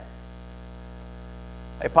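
Steady electrical mains hum, a low even drone, with a man's voice starting in near the end.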